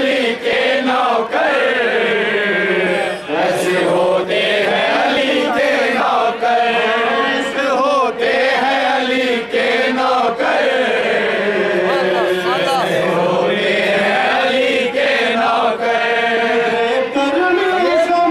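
A man singing an unaccompanied devotional recitation into a microphone, in long, drawn-out phrases whose pitch glides up and down.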